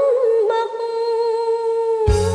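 A woman's solo voice in a Khmer song, humming a short melodic turn and then holding one long note with a slight waver, without accompaniment.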